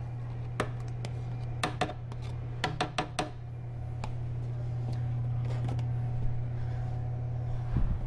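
A spatula scraping and tapping a plastic measuring pitcher as thick mayonnaise is emptied into a blender jar: a run of sharp taps in the first few seconds. A knock near the end as the blender is handled, over a steady low hum.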